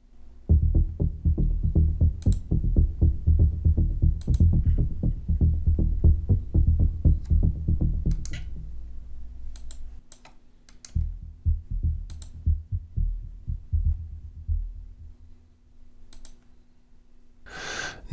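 Synthesizer bass arpeggio from Retrologue 2 pulsing rapidly and evenly in the low register. It uses a dark, filtered preset with a lowered cutoff. The pulses thin out and fade after about ten seconds, over a held low tone.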